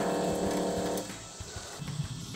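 Small electric pump of a Dometic USB-powered faucet running with a steady hum as water streams into a stainless steel sink. The hum stops about a second in.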